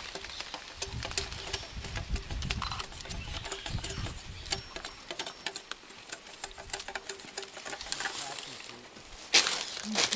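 Machete blade scraping and cutting along a sugar cane stalk, a run of short scrapes and clicks, with a louder scrape near the end. A low rumble runs under the first half.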